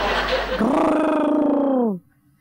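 A man's voice drawn out in one long held call, steady at first and then sliding down in pitch before breaking off abruptly.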